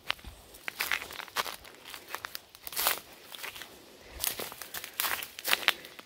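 Footsteps through brush and dry ground litter: uneven steps and rustles, about one every half second.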